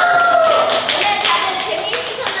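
Several people clapping their hands in scattered, quick claps, mixed with young women's voices.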